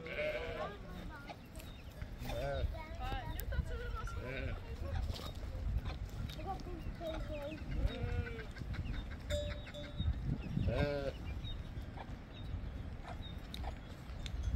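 Sheep and goats of a passing flock bleating, several scattered calls with the loudest and longest near the end.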